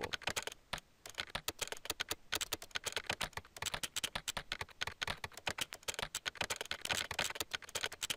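Simulated computer-keyboard key clicks from TypYo's typing sound effect, one click for each keystroke the program sends as it types code automatically. The clicks come rapid and unevenly spaced, several a second, in the manner of human typing, with brief pauses near the start and about two seconds in.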